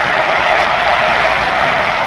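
Stadium crowd cheering, a steady wash of noise with no single voice standing out.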